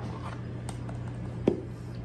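A metal spoon clicking and scraping against a plastic measuring cup as whipped topping is scooped out, with one sharper knock about one and a half seconds in, over a low steady hum.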